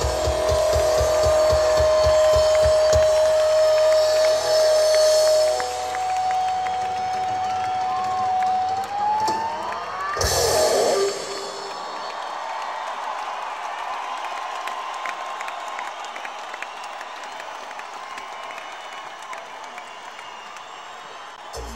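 A live rock band ends a song: a long held note over pulsing bass and drums slides upward, then a final crash about ten seconds in. A large crowd then cheers and applauds, slowly dying down.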